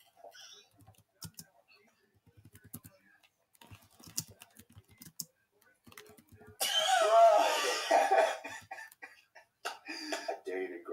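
Keystrokes and short runs of typing on a computer keyboard as a text message is entered. About six and a half seconds in, a loud burst of voice lasting about two seconds drowns them out.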